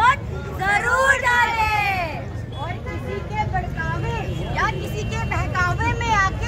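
Performers' raised voices shouting and calling out in a street play, with one long drawn-out cry about a second in, over crowd babble and a steady low street rumble.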